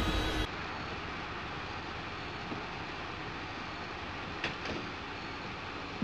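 Steady, even outdoor background rumble, with a faint click or two about four and a half seconds in as a door is worked.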